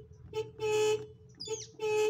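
Volkswagen Beetle's electric horn sounding as the steering-wheel horn pad is pressed: twice a quick blip followed by a longer steady beep, the horn working again now that its two wires are reconnected.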